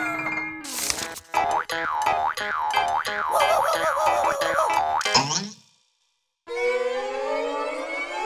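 Cartoon sound effects with music: a run of quick up-and-down pitch sweeps, springy like a boing, for about three and a half seconds, then a falling glide, a second of silence, and a slowly rising held tone near the end.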